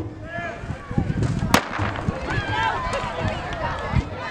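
A single sharp crack of a starter's pistol about one and a half seconds in, firing to start the race, over the chatter and calls of spectators.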